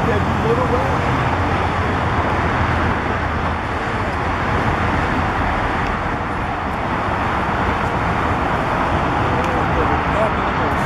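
Steady road traffic noise, a continuous rush with no breaks.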